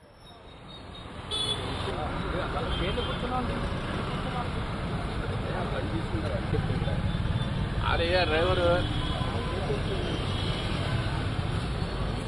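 Street ambience fading in over the first second or so: a steady low rumble of road traffic with indistinct voices of people. About eight seconds in, a brief wavering tone sounds, like a horn or a call.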